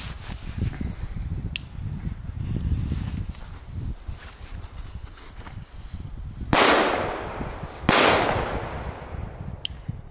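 Two loud firecracker bangs just over a second apart, each trailing off in a short echo, over a low wind rumble on the microphone.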